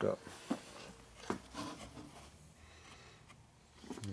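A few light, sharp metal clicks and knocks as the shaft and gears of a Harley-Davidson four-speed transmission are shifted in its case.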